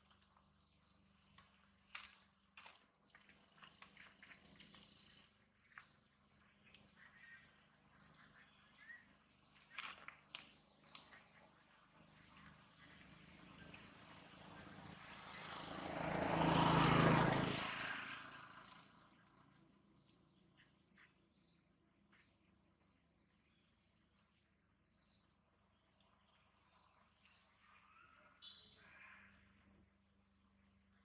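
Small birds chirping, short high notes repeated about twice a second, thinning out in the second half. Midway, a rushing noise swells and fades over about four seconds and briefly drowns them out.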